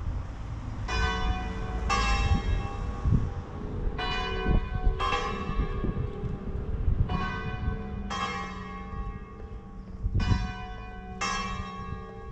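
Church bells ringing: eight strikes in pairs about a second apart, a new pair every three seconds or so, each note ringing on as the next begins. A steady low rumble runs underneath.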